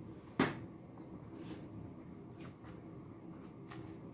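A sharp knock about half a second in, then a few faint clicks of a fork picking at food in a container, over a low steady hum.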